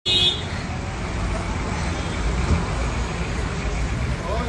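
Street traffic heard through a phone's microphone while walking: a steady rumble of cars and engines, with a short high-pitched sound at the very start and a single knock about two and a half seconds in.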